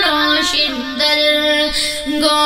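A boy singing a Pashto naat, holding long notes that step and bend in pitch, with a brief break about a second in.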